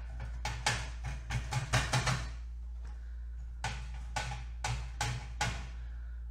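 Felt applicator pad loaded with alcohol ink dabbed repeatedly onto metal tree cutouts: irregular runs of quick taps with a break of about a second in the middle, over a steady low hum.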